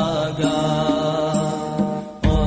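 Chanted vocal music: a voice holds long, wavering notes, moving to a new note about every second.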